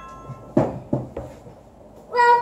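Knocks on a hard surface: two sharp ones about half a second apart near the middle, then a fainter one.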